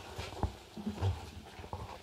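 A few faint, scattered knocks and handling noise in a quiet room, the clearest knock about half a second in.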